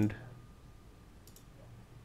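Two faint computer mouse clicks close together about halfway through, opening a dropdown menu in a program.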